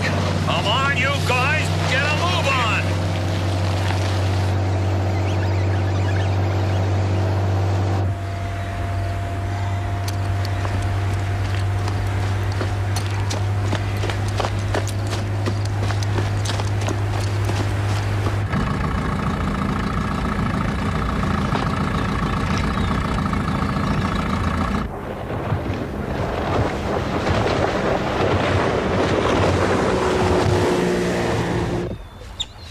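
Motorboat engines running steadily, a low drone with a steady pitch that changes abruptly three times. In the last few seconds it gives way to a noisier rushing sound.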